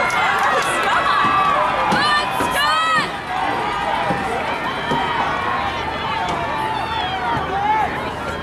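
Spectators' voices shouting and calling out to runners, many overlapping at once, with one loud high cheer that rises and falls about two to three seconds in.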